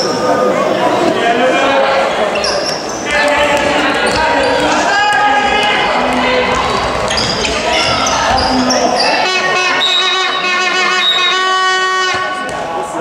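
Handball game play in a sports hall: the ball bouncing on the floor, short high squeaks of shoes on the court, and players' voices, all echoing in the large hall.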